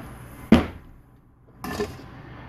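Metal machine parts being handled on a work mat: one sharp knock with a short ring about half a second in, as a piece of the mini mill is set down, then a brief scraping rustle near the end.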